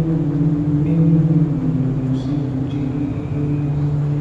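A man's voice chanting in long, drawn-out held notes that step slowly from pitch to pitch, with no clear words.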